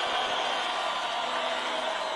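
A crowd cheering and shouting, with some hand clapping, in a steady wash of noise.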